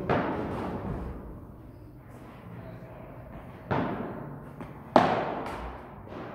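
Padel ball struck by padel rackets during a rally, a few sharp pops with a long echoing tail from the hall. The loudest comes about 5 s in.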